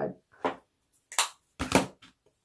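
Three brief, soft clicks spaced through an otherwise quiet pause, the last near the end being the strongest.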